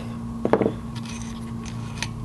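Light handling of a metal speedometer housing and screwdriver at a workbench: a short scrape about half a second in, then a few faint clicks, over a steady low room hum.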